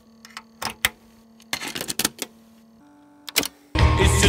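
A headphone jack plug being pushed into a socket: a run of sharp clicks and scrapes, with a faint steady hum that steps up in pitch about three seconds in. Music starts just before the end.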